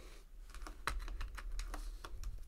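Tarot cards being gathered up and slid across a tabletop by hand, giving an irregular run of light clicks and taps as the cards knock together.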